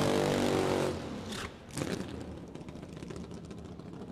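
Drag-racing funny car at the starting line, a steady mechanical sound for about the first second, then dropping to a quieter hiss with a couple of brief flare-ups.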